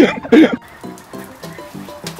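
A man laughing loudly for about half a second, then quiet background music of short, repeated plucked notes.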